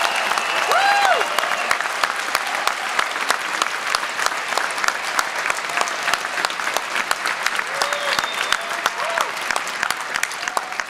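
Audience applauding, a dense steady clapping that eases slightly over time, with a few voices calling out about a second in and again near the end.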